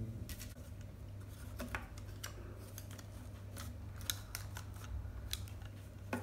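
Jumbo wooden craft sticks clicking and tapping against one another and the table as they are pushed under a rubber band around a cardboard roll: scattered, irregular light clicks over a low steady hum.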